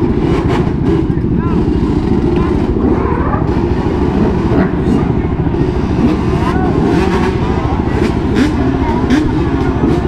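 Many motorcycles and quads running at idle together, a steady, dense engine rumble, with voices of a crowd talking over it.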